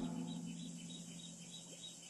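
Crickets chirping in a quiet night ambience, about six small chirps a second, under a low steady tone that dies away after the shout.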